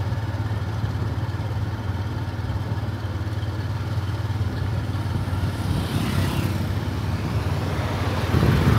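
Motorcycle running steadily on the move, with a low wind rumble on the microphone.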